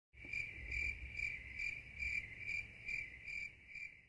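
Cricket chirping in a steady, even rhythm of a little over two chirps a second.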